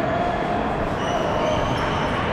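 Sports-hall ambience under a steady hum. Brief high squeaks come a little after a second in, from shoes on the wooden court floor.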